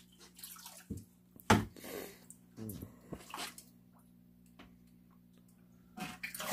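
Water splashing and dripping as a fish net is dipped into an aquarium and lifted out over a plastic tub while goldfish are transferred. There are a few separate splashes in the first half, then only faint dripping over a low steady hum.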